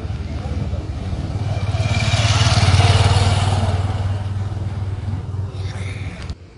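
A motor vehicle's engine passing close by: a low, pulsing engine sound that grows louder to a peak about three seconds in, then fades away.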